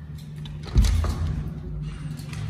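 A wooden door being eased open, with a sudden thud about three-quarters of a second in.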